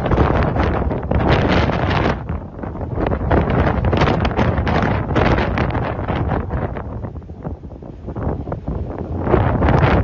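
Strong wind buffeting a phone microphone at a grass wildfire, a loud, rough roar that surges and eases in gusts.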